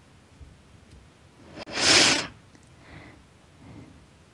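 A woman coughs once, loudly, about two seconds in, followed by two much fainter short breathy sounds.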